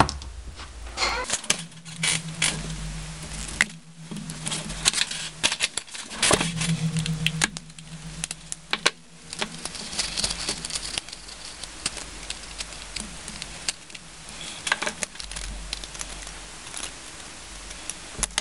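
Plastic LED bulb housings being pried and pulled apart by hand: a run of irregular sharp clicks, cracks and scrapes, with a low hum coming and going underneath.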